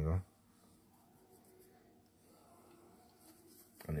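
Near silence: quiet room tone, between a man's speech that ends just after the start and resumes near the end.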